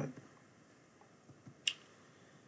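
A single sharp computer mouse click about one and a half seconds in, with a couple of fainter soft ticks just before it, over quiet room tone.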